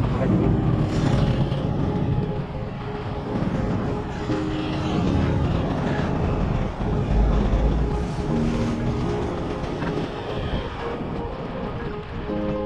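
Steady wind rumble on the microphone and highway traffic noise while a fat bike is ridden along the road shoulder. Background music with held notes comes and goes over it.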